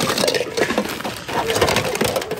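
Rummaging through a bin of mixed secondhand goods by hand: a run of irregular clatters, knocks and crinkles as hard plastic objects and bagged items are shoved aside.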